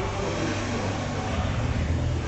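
Steady low rumble of indoor room noise, with no distinct event standing out.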